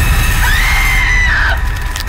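Loud horror jump-scare sting: a sudden burst of sound with a deep rumble, and over it a high scream that rises, holds for about a second and drops away, before the whole hit starts to fade.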